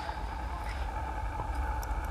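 Low steady outdoor rumble with a faint steady hum and a few faint knocks.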